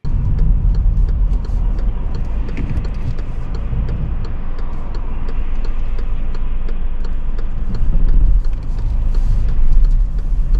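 Inside a small car at a right turn: steady low engine and road rumble with the turn indicator ticking, about three ticks a second. The rumble swells in the last couple of seconds as the car moves off.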